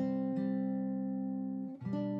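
Background music on guitar: a chord struck and held ringing, then a new chord struck near the end.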